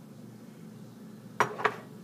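Two quick light clinks of kitchen dishware, about a quarter second apart, roughly a second and a half in, over a faint steady room hum.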